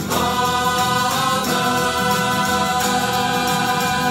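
Choir singing a slow sacred piece in long held chords, with a new chord right at the start and another about a second and a half in.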